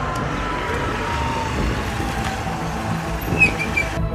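Road traffic with a siren-like tone that slowly falls in pitch. A brief high chirp about three and a half seconds in is the loudest moment.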